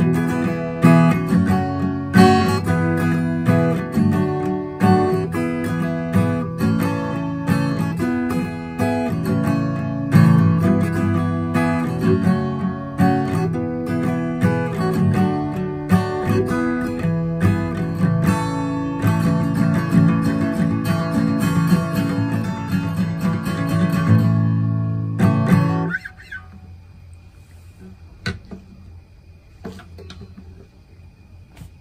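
Acoustic guitar with a capo, strummed chords in a steady rhythm. The playing stops abruptly about 26 seconds in, leaving quiet room sound with a single faint click near the end.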